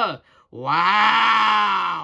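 A person's drawn-out vocal exclamation "waaa", held on one long voice for about two seconds from about half a second in, its pitch rising slightly and then sagging as it fades.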